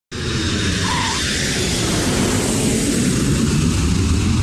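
Intro sound effect: a loud, steady rushing roar with a deep rumble underneath, starting abruptly just after the start.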